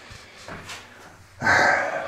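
A man's loud, breathy exhale close to the microphone about one and a half seconds in, after a stretch of faint rustling as he moves about.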